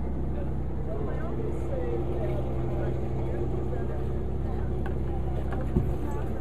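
A boat's engine running with a steady low hum, with faint voices in the background and a single knock near the end.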